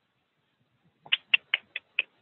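Computer keyboard keystrokes: five quick, sharp key clicks in an even run, starting about a second in.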